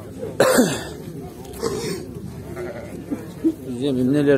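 Sheep bleating amid people's voices, with a wavering call near the end. A loud, sudden harsh burst about half a second in.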